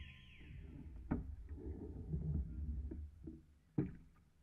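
Outrigger canoe underway: a low rumble of wind and water on the camera's microphone, with two sharp knocks about a second in and near the end.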